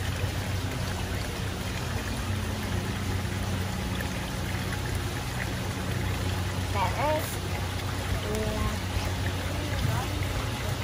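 Water running steadily through a wooden sluice trough, with a low steady hum underneath.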